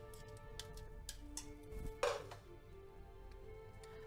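Soft background music with steady tones, over a few light clinks of cookware at a stainless steel pot and its glass lid, with one louder clatter about two seconds in.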